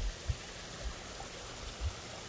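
Small rock waterfall splashing steadily into a garden koi pond, with a few soft low bumps near the start and again near the end.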